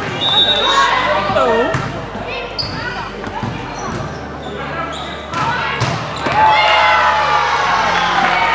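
Live volleyball rally: several sharp hits of the ball among players' shouts and calls, ending about six seconds in with a louder, held shout of celebration as the point is won.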